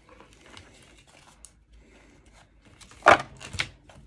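A stack of Pokémon trading cards being handled and put into a cardboard storage box: faint light ticks at first, then two short, louder rustling clacks of the cards a little after three seconds in.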